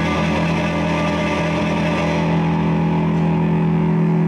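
Live blues band holding one sustained chord on electric instruments, ringing steadily; its higher overtones die away about halfway through.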